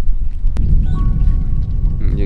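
Wind buffeting the microphone as a loud, steady low rumble, with a single sharp click about half a second in and a few faint steady tones through the middle.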